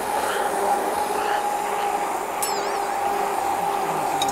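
Hand-held immersion blender running steadily with a constant motor hum, puréeing boiled potatoes with cream and butter into a runny mash.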